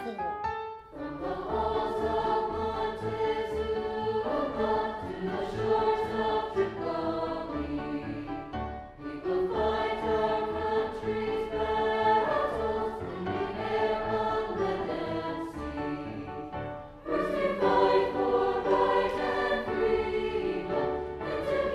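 High school choir singing a patriotic armed-forces medley with instrumental accompaniment, in phrases of several seconds over a pulsing bass line. It grows louder near the end.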